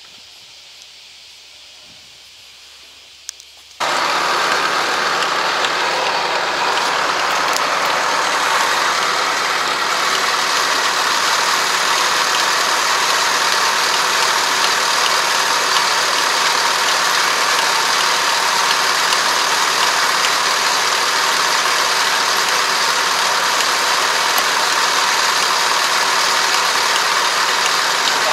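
Kubota ARN460 combine harvester's diesel engine running steadily close by, a loud even mechanical noise that comes in abruptly about four seconds in, after a short quiet stretch with a couple of faint clicks.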